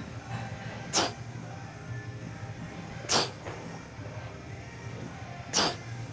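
Three short, forceful exhalations about two seconds apart, one with each pull of a heavy single-arm dumbbell row, over low background music.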